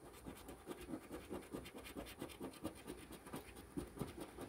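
A large coin scraping the coating off a paper lottery scratch-off ticket in quick, even, back-and-forth strokes, several a second.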